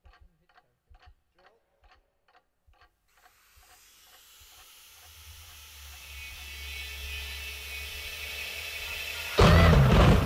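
Recorded intro of a music track: a clock ticking about four times a second, fading out about three seconds in. A swell of hiss and low drone then builds steadily and breaks into a loud booming hit of the music near the end.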